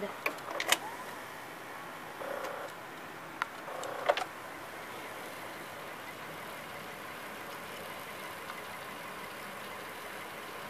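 Samsung VR5656 VHS VCR mechanism switching from stop to rewind: a few sharp clicks, two short motor hums, then a steady quiet whir as the reels rewind the tape. It is rewinding slowly because the tape is near its beginning.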